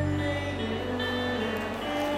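Live rock band playing amplified electric guitars and bass guitar, a low bass note held steady under sustained guitar notes.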